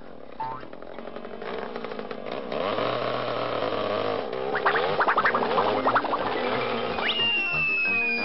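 Cartoon background music. Near the end a quick rising whistle turns into a long falling whistle, the cartoon sound of something dropping from the sky.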